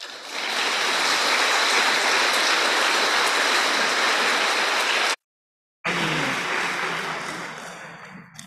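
Audience applauding, starting just as the speech ends and slowly dying away. The sound cuts out completely for about half a second about five seconds in.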